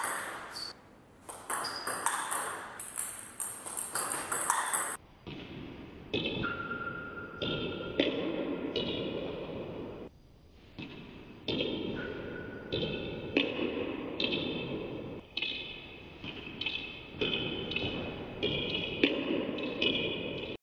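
A table tennis ball being hit back and forth in a fast rally, a quick series of sharp ball-on-bat and ball-on-table hits, each ringing briefly in the hall. There is a short lull about halfway before the hitting starts again.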